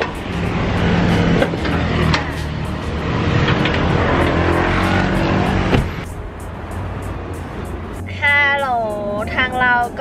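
Roadside traffic noise with the steady low hum of a running truck engine beside a flatbed tow truck, broken by a few sharp metal knocks. About six seconds in the sound cuts to a quieter, duller hum, and a woman's voice comes in near the end.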